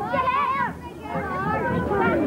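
Excited high-pitched shouts and chatter from a group of children and young people at a community sports day, with a short lull just before the middle.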